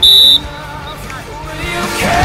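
A referee's whistle gives one short blast right at the start, the loudest sound here, over background music that grows louder near the end.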